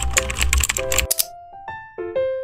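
Computer keyboard typing sound effect, a rapid run of clicks that stops about a second in, over a light piano tune that plays on after it.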